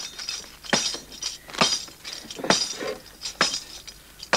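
Hand-held tambourine struck in a slow, even beat, about one hit a second, each hit a short shimmer of jingles.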